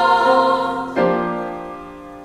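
Women's chorus singing with vibrato, giving way about a second in to a piano chord struck and left to fade.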